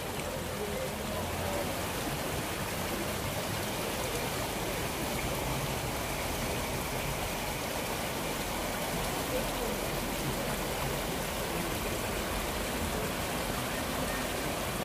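Spring water rushing and splashing over rocks in a small stream, a steady, even rush.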